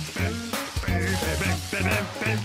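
Background music from a cartoon score, a run of short pitched notes over a low pulsing bass.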